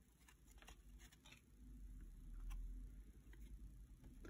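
Faint handling of a stack of 1972 O-Pee-Chee cardboard baseball cards as the top card is slid off: a few soft, irregular ticks and light scuffs, near silence overall.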